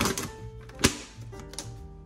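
Plastic Huel powder pouch being handled, with crinkling and clicks and one sharp click a little before the middle, over background music.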